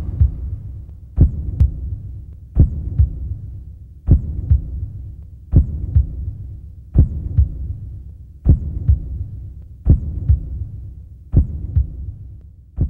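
Heartbeat sound effect: a deep double thump (lub-dub) repeating slowly, about once every second and a half, over a low steady hum.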